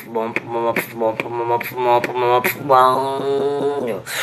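Beatboxing into a cupped hand: sharp percussive hits about two or three a second over a hummed tone, then a held hummed note, sliding down at its start, for about a second near the end.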